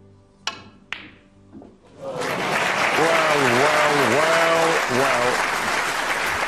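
Two sharp clicks of snooker balls about half a second apart, a stroke played on the table, then loud audience applause that breaks out about two seconds in and runs on.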